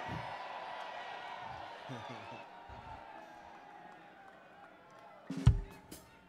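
A live band's last chord ringing out and fading away at the end of a song, with faint crowd voices. About five and a half seconds in comes a single sharp, loud thump.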